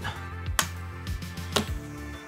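Soft background music, with a sharp click about half a second in and a softer knock about a second later as the magnetic back of an Aputure MC LED panel light snaps onto a metal bar.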